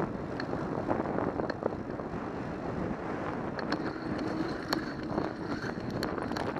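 Riding noise of a bicycle heard through a camera mounted on the bike: tyres rolling on asphalt and wind rushing past, with several sharp clicks and rattles from the bike over bumps. A faint high whine comes in a little past halfway.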